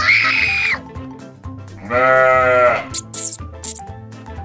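Cartoon cow mooing twice in distress over background music. A short rising cry comes at the start and a longer moo about two seconds in, its pitch dropping at the end.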